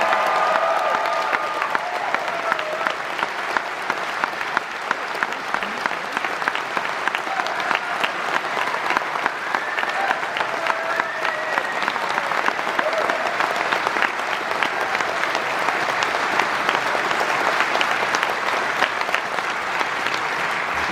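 Concert audience applauding, steady and sustained, with a few voices calling out from the crowd.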